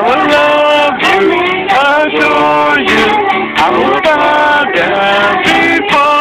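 People singing a worship song together, a man's voice prominent, to acoustic guitar accompaniment.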